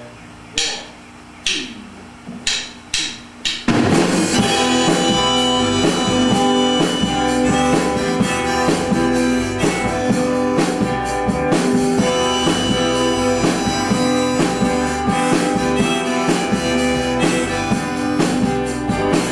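A rock band's count-in of five sharp clicks, two slow then three quick, after which drums, acoustic guitars and electric guitar come in together about four seconds in and play on loudly with a steady beat.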